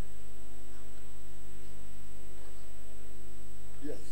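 Steady electrical mains hum with many overtones, fairly loud, with a faint voice rising near the end.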